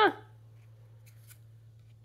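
Soft scrape and rustle of Pokémon trading cards sliding against each other as they are handled, faint, with a brief scrape about a second in, over a low steady hum.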